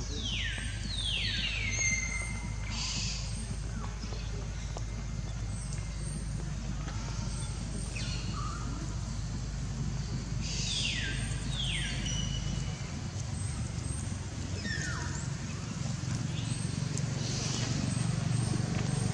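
An animal giving short, high calls that fall steeply in pitch, mostly in pairs, a few times over a steady outdoor background hiss.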